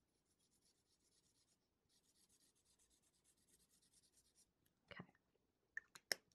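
Faint scratch of a felt-tip marker drawn across paper in two long strokes, tracing a line along the edge of a sticker, followed by a light tap near the end.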